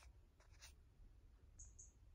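Near silence: room tone with a few faint clicks in the first second and two faint, short high-pitched chirps near the end.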